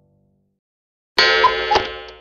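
A sudden bright, bell-like chime sound effect strikes about a second in, after a moment of silence, then rings and fades away. It is a transition sting for a time-skip title card.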